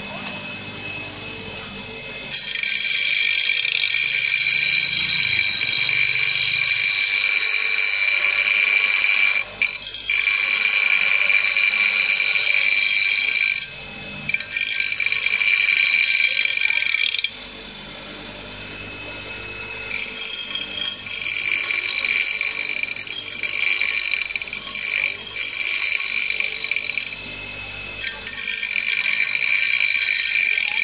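Bench grinder's abrasive wheel grinding the steel blade of a rubber-tapping knife: a loud, high-pitched screech in several passes of a few seconds each, broken by short quieter pauses, the longest about halfway through.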